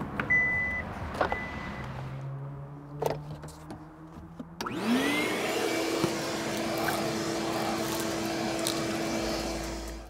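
A 400-watt shop vac is switched on about halfway through. Its motor spins up with a quick rising whine and then runs steadily, sucking through the hose. Before it starts there are only a few faint clicks.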